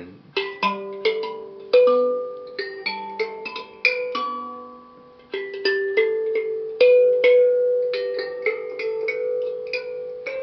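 Njari mbira, a Shona thumb piano, with its metal keys plucked by the thumbs. It plays a run of single notes, each ringing on and fading after the pluck, with the notes overlapping.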